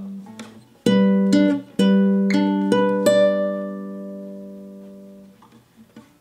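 Acoustic guitar: a G chord barred at the tenth fret, picked one note at a time, six notes about half a second apart, the last left to ring and fade.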